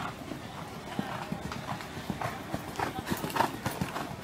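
A horse's hoofbeats on the sand arena footing, growing louder as it comes close past the microphone in the second half.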